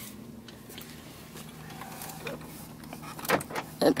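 Pickup truck engine running with a low, steady hum, heard from inside the cab, with a couple of brief knocks near the end.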